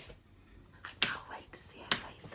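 Two sharp clicks about a second apart as a wall light switch is flipped off, with faint whispering in between.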